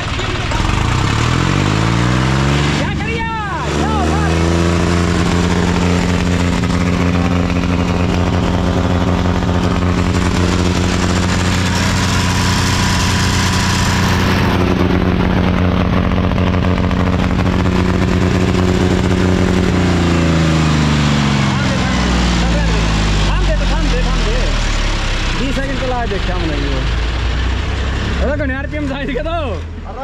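John Deere 5039 D tractor's three-cylinder diesel engine revved from idle up to full throttle over about four seconds. It holds steady at full revs, about 3000 rpm, for roughly sixteen seconds, then is throttled back down to idle.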